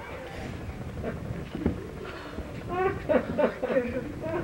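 Soft thumps and shuffling on turf as a man collapses flat from a push-up, then wordless voices, short bursts of laughter, from about three seconds in.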